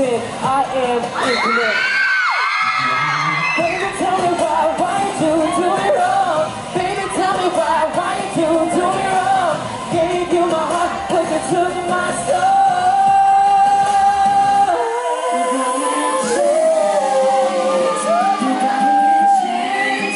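Male pop vocal group singing live into microphones over pop backing music, the voices echoing in a large hall.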